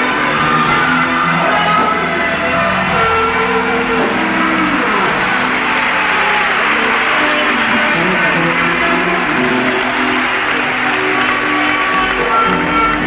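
Live rock band playing in an arena, with guitar among the instruments and the crowd heard under the music.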